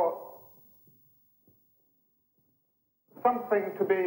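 Speech: a phrase of narration trails off, then about two and a half seconds of near silence, then the voice resumes near the end.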